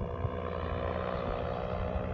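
Paramotor engine and propeller droning steadily in flight, with wind buffeting the microphone.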